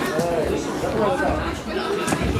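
Indistinct chatter and calls from spectators around a ring, with a single sharp smack right at the start.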